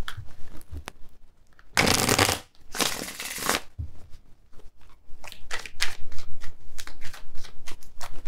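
A deck of tarot cards being shuffled by hand: two long swishes about two and three seconds in, then a rapid run of short card flicks near the end.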